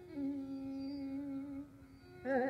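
A female Carnatic singer holds one long steady note, sung on an open vowel, in rāga Shanmukhapriya. The note fades out near the end.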